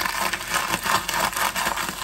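A bag of chips being crushed in the hands: the plastic bag crinkling and the chips inside crunching into crumbs in a dense, irregular crackle.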